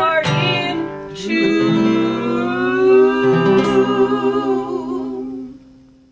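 Two women singing in harmony over a strummed acoustic guitar, finishing on a long held note and chord that fade out near the end.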